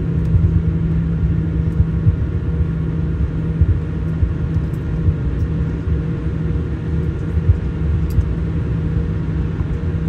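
Jet airliner cabin noise while taxiing: a steady low rumble with a constant engine hum at taxi power.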